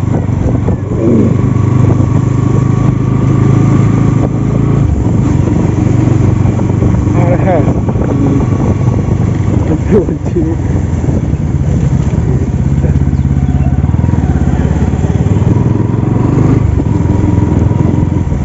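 Bajaj Pulsar NS200's single-cylinder engine running steadily under way, heard from the rider's position with road and wind noise, its hum dipping briefly about five seconds in.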